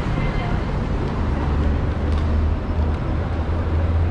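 Steady low rumble of city street traffic, with people's voices in the background.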